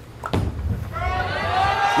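A bowling ball thuds onto the lane and rolls toward the pins with a low rumble. Crowd voices rise in the second half as it nears the rack.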